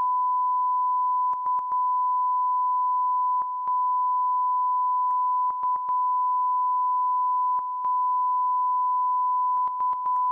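A steady single-pitch line-up test tone, the reference tone sent with colour bars on an idle broadcast feed. It is broken about a dozen times at uneven spacing by brief dropouts, each with a small click.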